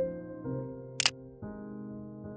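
Slow piano music, with a single camera shutter click, a quick double snap, about halfway through.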